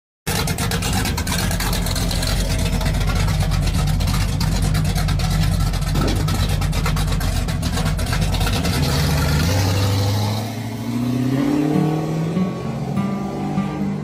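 A car engine revving loudly under intro music, a low rumble with crackle. From about ten seconds in, the pitch climbs in steps.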